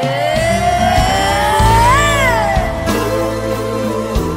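Ballad music with bass and drums coming in just after the start. Over it, one long high note slides steadily upward, peaks about halfway through, then bends down and fades.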